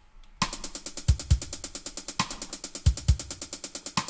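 Programmed drum pattern from Cubase's Beat Designer step sequencer playing back, starting about half a second in. A closed hi-hat ticks on every sixteenth step, the bass drum hits twice in quick succession across each bar line, and a side stick lands mid-bar.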